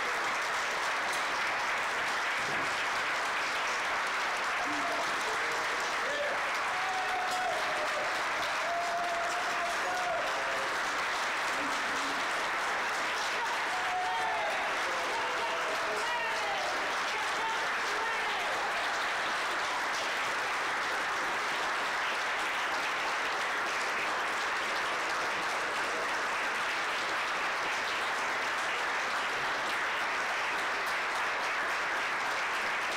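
A room of dinner guests applauding, steady clapping with no break. A few voices call out over it in the middle.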